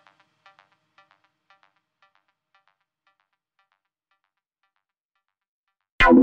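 Background music fading out: a repeating figure of short pitched notes growing quieter until near silence about five seconds in.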